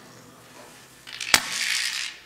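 A sudden sharp crack a little over a second in, followed by about half a second of crashing, shattering-like noise.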